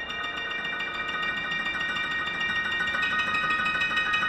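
Steinway grand piano played as a fast stream of repeated high notes, held tones ringing together into a bell-like shimmer that grows steadily louder.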